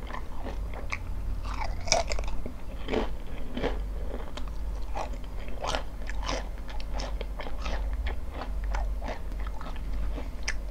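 Close-miked crunching and chewing of a mouthful of potato chips: many quick, sharp crunches in an uneven run, the loudest about two seconds in.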